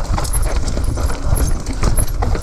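Mountain bike rattling and clattering down a rough, rocky dirt trail, with rapid, irregular knocks over a steady low rumble of tyres and frame.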